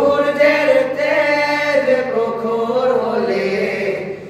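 Several young male voices singing a Bengali Islamic gojol together, unaccompanied, through microphones. One long held phrase slowly falls in pitch and ends near the close.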